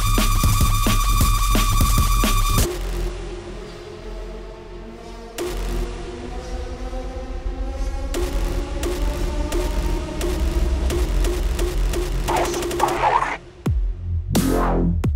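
Electronic bass club track: a dense beat with a steady high synth tone cuts out about two and a half seconds in to a sparse breakdown. From there, slowly rising synth tones and a pulsing beat build back up, with a short dropout just before the end.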